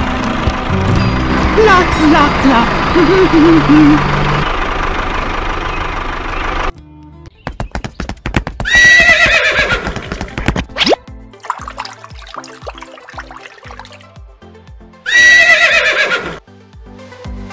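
Background music that cuts off abruptly, followed by a recorded horse whinny played twice: once about nine seconds in and again, identically, near the end.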